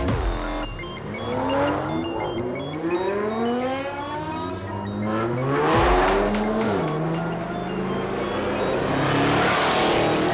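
Car engines revving in a series of rising sweeps, then a sudden loud hit about six seconds in, followed by an engine holding a steadier note, all over a music bed.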